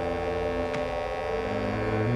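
Background film score of sustained low droning notes, with a new low note entering about three quarters of the way in.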